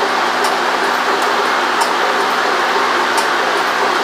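Automatic wire stripping and cutting machine running, a steady mechanical noise broken by a sharp click about every two-thirds of a second as its blades cut and strip each length of insulated wire.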